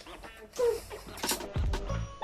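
Crunching as a raw onion is chewed, with a short vocal noise about half a second in. Background music with a bass beat comes in near the end.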